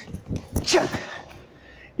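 Barefoot kung fu jumping back kick: light footfalls, a sharp thud about half a second in, then a short hissing exhale with the kick.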